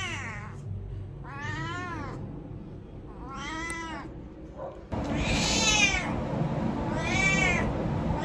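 A domestic cat yowling again and again, about five long drawn-out calls that each rise and fall in pitch, roughly two seconds apart. These are distress cries of a cat carried into a bathroom that she dreads from being bathed there many times.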